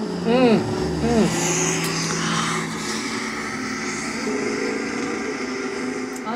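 Diesel pickup trucks running in the mud with a steady engine drone, and two short shouts from onlookers in the first second or so.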